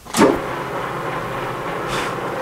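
Metal lathe switched on: the motor and spindle start suddenly about a fifth of a second in, then run steadily with a low hum from the motor and gearing as the chuck spins.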